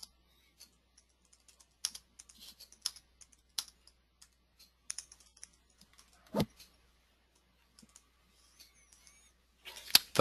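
Irregular, faint clicks of typing on a computer keyboard, picked up by a conference-call microphone, with one louder thump about six seconds in.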